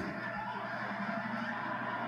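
Studio audience laughing, a dense, steady wash of laughter over a low mains hum.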